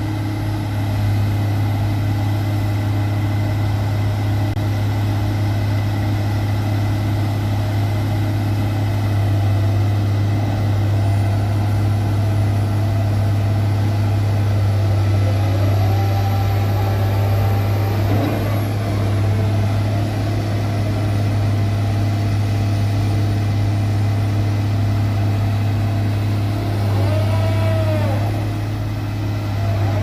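Heavy diesel engine of a bored-pile drilling rig running steadily at one even pitch, a deep constant hum. Short whining sweeps in pitch come through about halfway and again near the end.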